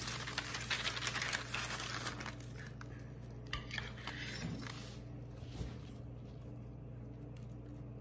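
Parchment paper rustling and crinkling as it is gathered up and folded into a funnel, with dry beef bouillon pieces sliding along it, and a few faint taps around the middle.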